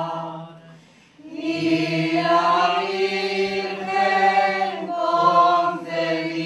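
A group of voices singing a slow hymn in long held notes, with a pause for breath about a second in before the singing resumes.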